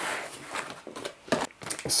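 Rustling of a cardboard box and plastic-bagged packaging being handled as the box is opened and its contents lifted out, with a few soft knocks.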